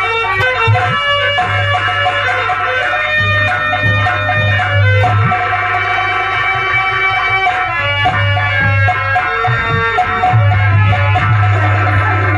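Nautanki folk music without singing: a held, stepping melody over a dholak and a nagara kettle drum, the nagara coming in with long deep rolls several times.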